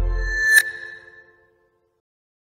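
Synth background music ending on a single bright, chime-like hit about half a second in, which rings and fades out with the sustained pad.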